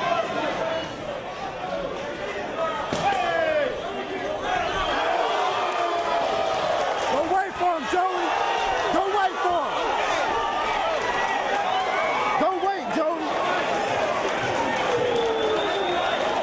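Crowd of spectators shouting and yelling over one another at a live MMA fight, with a few sharp thuds among the voices.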